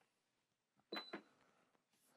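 Button pressed on a Soleus Air portable air conditioner's control panel about a second in: a click with a short high beep, then a second click, against near silence.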